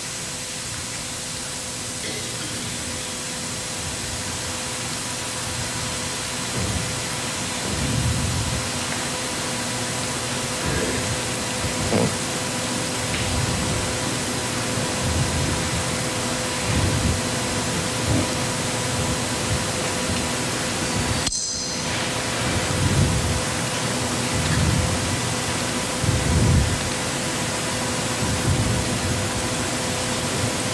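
Steady, loud hiss with faint steady hum tones under it, and irregular low rumbles from about a quarter of the way in. The hiss drops out for a moment about two-thirds of the way through.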